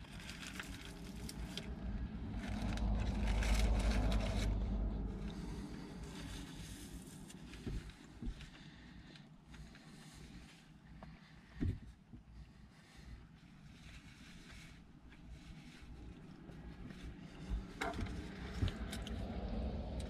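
Someone eating in a parked car: quiet chewing and the paper wrapper of a pulled pork sandwich rustling, with a single sharp click near the middle. A low rumble swells and fades over the first five seconds.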